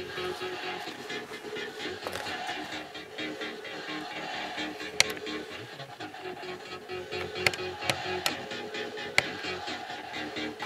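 A song with a steady beat playing from cassette tape on a Quasar GX3632 portable boombox, through its newly fitted 4-ohm speakers. A few sharp clicks stand out over the music in the second half.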